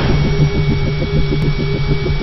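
Sound effects for an animated logo: a low rumble pulsing about ten times a second, like an engine sound effect, under a faint steady high tone.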